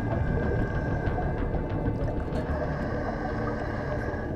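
Ambient background score: a steady drone of held tones over a low rumble.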